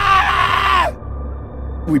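One long, loud scream that sags in pitch and breaks off about a second in, over a low steady drone.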